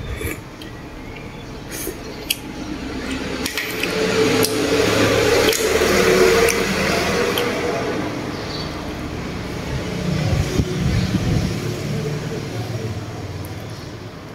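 Close-up sounds of eating crab: wet sucking, slurping and chewing, loudest around the middle, with a few sharp clicks of shell being cracked and picked apart early on.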